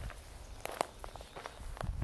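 Footsteps on grass and fallen dry leaves: a few soft, irregular crunches over a low rumble.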